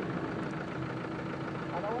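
A 4x4's engine idling at low revs, a steady low hum; a voice comes in near the end.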